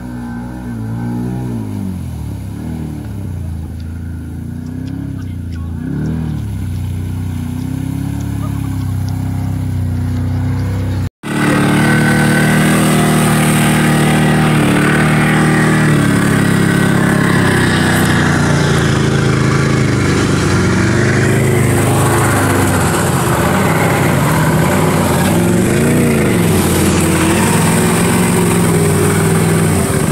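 Can-Am Maverick 1000R side-by-side's V-twin engine revving up and down as it drives through a shallow river. After a sudden cut about eleven seconds in, louder steady engine and rushing noise come from on board a moving vehicle.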